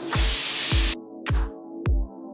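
Pressure cooker whistle: steam hisses loudly out past the weight valve for about a second, then stops. Electronic music with a steady kick-drum beat plays under it and runs on.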